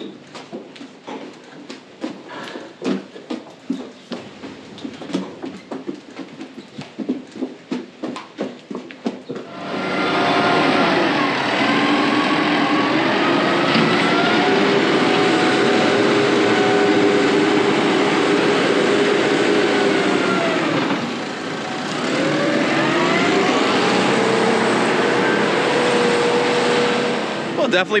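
A New Holland tractor's diesel engine running loudly under load. Its note rises and holds, drops away briefly about two-thirds through, then climbs again. Before the engine comes in, there is a stretch of irregular knocks and clicks.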